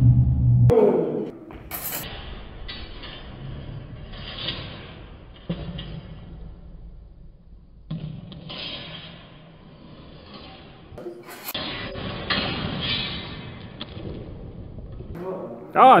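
Steel training longswords in a sparring bout in a large, echoing gym: shuffling footsteps and a couple of sharp blade contacts, one about two seconds in and another around eleven seconds, over murmuring voices in the hall.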